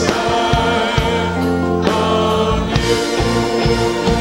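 A church choir singing a gospel worship song, holding long notes over instrumental backing.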